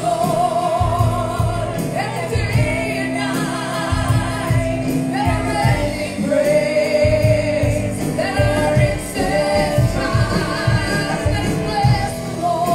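Gospel worship song: a woman sings with vibrato, holding some long notes, over keyboard accompaniment with a steady beat.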